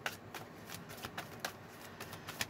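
Oracle or tarot cards being shuffled by hand: a faint, quick, irregular run of soft card clicks.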